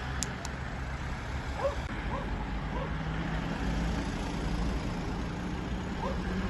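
Roadside traffic noise: a steady low rumble, with a vehicle engine's hum coming in about halfway through. A few short, faint chirps sound in the first half.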